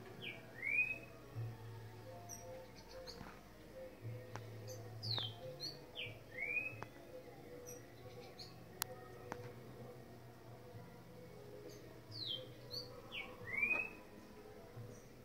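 A bird calling three times, each call a short whistled phrase: a falling note followed by a rising one. The calls come near the start, about five seconds in and near the end, with a few faint clicks between them.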